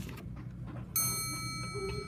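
A single bell-like metallic ding about a second in, ringing on with a slow fade.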